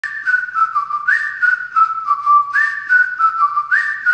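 Whistled melody opening a pop song: a single clear whistled tune stepping up and down, repeating its phrase, over a light percussive beat.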